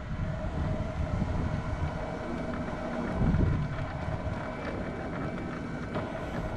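Quickie power wheelchair driving on asphalt: its electric drive motors give a steady whine over the low rumble of the wheels on the pavement.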